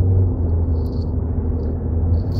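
A steady low drone of several held tones, unchanging throughout.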